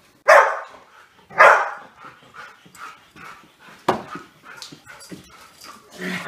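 Golden retriever barking twice, loudly and about a second apart, while playing tug with a toy. Softer, shorter sounds follow, with one sharp knock about four seconds in.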